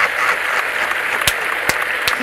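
Crowd applause, a dense, steady clapping, with two sharp clicks in the second half.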